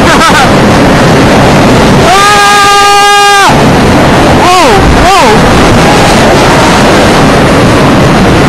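Loud rush of wind buffeting the microphone on a flying roller coaster in motion, with a rider's scream held on one pitch for about a second and a half starting two seconds in, then two short whoops that rise and fall.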